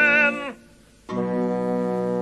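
Orchestral musical-theatre score: a held vibrato note stops about half a second in, a brief near-silent pause follows, then a steady held chord in low bowed strings.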